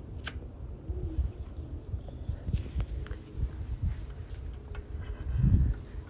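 Quiet handling noises as a painted glass jar and peeled-off painter's tape are handled, with a sharp click shortly after the start and a low thump near the end.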